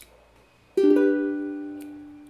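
Ukulele strummed once with a G major chord about three-quarters of a second in, then held and left to ring, fading slowly.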